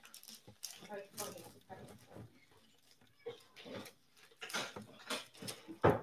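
Quiet handling noises: faint irregular rustles and soft knocks, with some low muttering, and a short louder sound just before the end.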